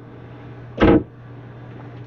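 Steady low hum from the yacht's running onboard equipment below decks, with a brief vocal sound just under a second in.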